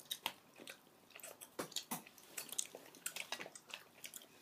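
Chewing tropical jelly beans, heard as quiet, irregular short mouth clicks.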